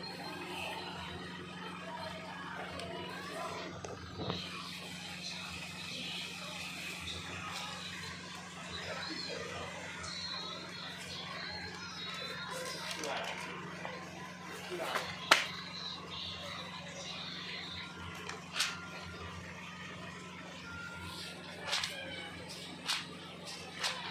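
Indistinct background voices, like a television or people in another room, over a steady low hum. There are a few sharp clicks, the loudest about two-thirds of the way through.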